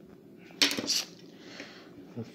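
A wooden pencil tossed down onto the paper-covered table, landing with a short clatter a little over half a second in and a second rattle just after.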